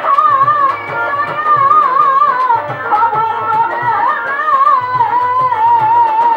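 A woman singing a Bengali Baul folk song with vibrato, accompanied by her own bowed violin and a drum keeping a quick, steady beat.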